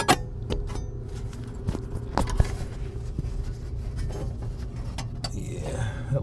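Scattered light clicks, knocks and scrapes of handling inside a furnace's sheet-metal blower compartment as the camera is moved about, over a low steady hum; the sharpest knocks come at the start and about two seconds in.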